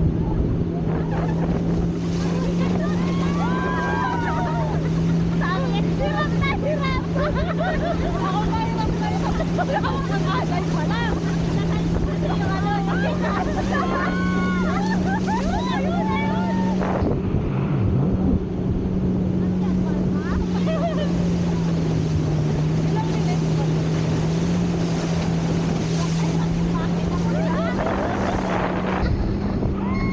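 The towing motorboat's engine drones steadily, its pitch shifting slightly up and down a few times, over the rush of water and wind on the microphone. The riders' voices and laughter come through, mostly in the first half.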